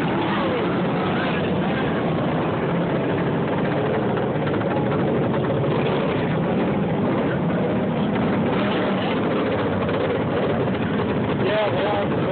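Several V-twin racing garden tractors running flat out around a dirt oval together, their engine pitch rising and falling as they lap. The mix is heard through a phone microphone with no treble.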